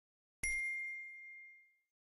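A single bell ding sound effect, the cue for a YouTube notification bell being switched on. It is a clear high ringing tone that strikes once and fades away over about a second and a half.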